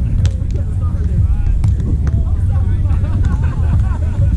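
A beach volleyball rally: a couple of sharp slaps of hands or forearms hitting the ball, about a quarter second in and again around a second and a half in, over players' voices and a steady low rumble.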